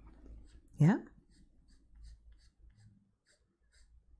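Faber-Castell Polychromos coloured pencil scratching lightly on paper in a steady run of short flicking strokes, roughly three to four a second. These are light, feathery shading strokes laying down blue.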